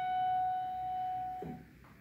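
A single high piano note, F sharp, held and slowly dying away, then stopped about one and a half seconds in with a soft thump as the key is let up.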